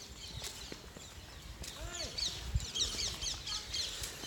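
Small birds chirping outdoors: a rapid series of short, falling high chirps that sets in about halfway through, over a faint open-air background.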